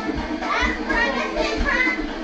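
Music with a steady beat under excited shouting and laughing from several people.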